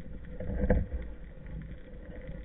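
Underwater noise picked up by a speargun-mounted camera: a low, steady rush of water against the housing, swelling briefly about half a second in with a faint click.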